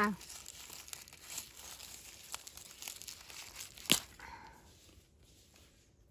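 Dry leaves and undergrowth rustling and crinkling as a hand reaches in and picks a ribwort plantain leaf, with a sharp snap near four seconds in as the leaf is torn off.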